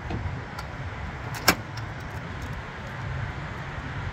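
Steady low rumble of outdoor vehicle noise, with one sharp click about a second and a half in as a pickup truck's bed cover is handled.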